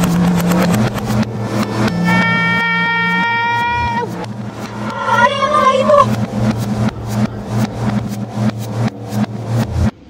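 Heavily effect-processed, distorted audio with rapid clicking throughout. A held electronic tone sounds from about two seconds in, and a warbling, voice-like sound comes around five seconds.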